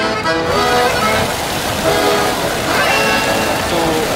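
Accordion music that breaks off about half a second in, giving way to street noise: traffic and voices of passers-by.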